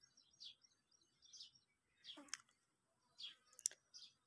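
Near silence with faint, scattered high bird chirps and a couple of sharp clicks near the end.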